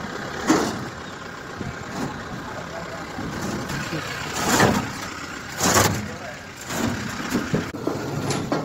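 Small goods truck's engine running at idle, with a few louder short noises over it about half a second, four and a half and nearly six seconds in.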